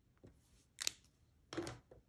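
Three short clicks and light knocks of hard plastic stamping tools being handled on the work surface: a clear acrylic stamp block and plate, while the rubber stamp is re-inked. The sharpest click comes a little under a second in, and a fuller knock follows at about one and a half seconds.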